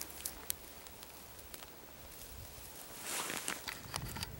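Quiet footsteps and clothing rustle as a person moves slowly. There are a couple of light clicks in the first second and a longer, louder rustle near the end.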